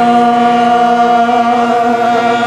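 Qawwali singing: a voice holds one long, steady note over harmonium accompaniment.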